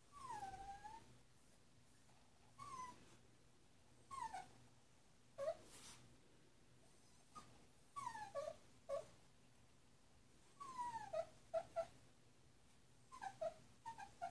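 Puppy whining: short, high whines that fall in pitch, coming in about seven bouts every second or two, some bouts broken into quick yelps.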